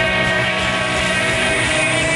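Live rock band's electric guitars holding a loud, steady, droning wash of sustained notes, with no clear drum hits.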